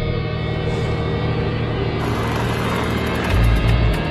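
Dark, suspenseful documentary underscore music: sustained tones over a low rumbling drone, with a deep low hit swelling up near the end.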